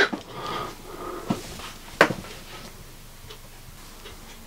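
A faint breathy hiss in the first second, a small click, then one sharp click about two seconds in, in the moments after a quarter-watt resistor across the mains blew.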